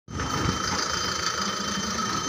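Diesel truck engine idling steadily, a low rumble with a steady high-pitched whine over it.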